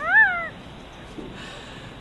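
A cat meowing once, a short call of about half a second that rises and then falls in pitch.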